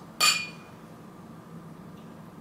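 Two glass beer glasses clinked together in a toast: a single sharp clink with a short, high ring that dies away quickly.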